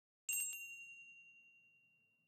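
A bright metallic ding sounding once, about a quarter second in, then ringing out and fading over about a second and a half: a chime sound effect over an animated logo.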